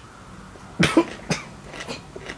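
A person coughing, three short coughs about a second in and a fainter one near the end.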